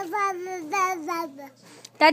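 A toddler babbling a sing-song string of about five repeated syllables, the pitch drifting gently down, trailing off after about a second and a half.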